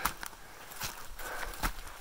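A hiker's footsteps on the forest floor while walking uphill: a handful of separate soft steps.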